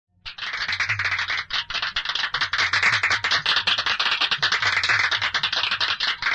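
Fast, even rattling clatter, about ten short hits a second, over a faint low pulsing beat, with a slow sweeping, phased colour to it.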